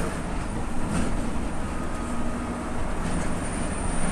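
Heavy truck cruising at road speed, heard from inside the cab: a steady low rumble of engine and tyres.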